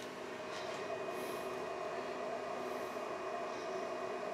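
Qidi Tech X-one2 3D printer running a print: a steady, quiet mechanical hum with a few constant whining tones.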